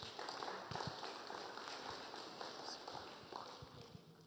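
A congregation applauding, a dense patter of claps that slowly dies away toward the end.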